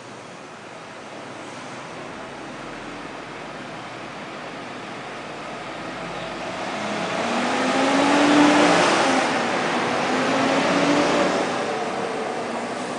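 Engine noise swelling up from about six seconds in: a low hum rising in pitch under a broad rush, loudest around eight to nine seconds, with a second smaller peak near the end.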